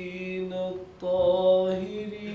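Nasheed: a male voice singing long, held notes. The sound dips briefly just before the middle, then a new, louder note begins.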